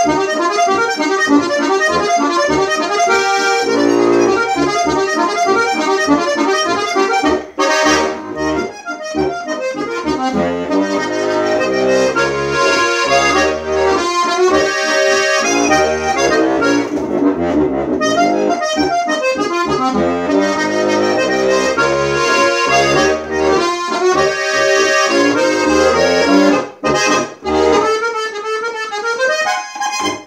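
Steirische Harmonika, a Styrian diatonic button accordion in B-Es-As-Des tuning, playing a folk tune: a melody over a rhythmic bass-and-chord accompaniment. The sound briefly breaks off between phrases about seven seconds in and again near the end.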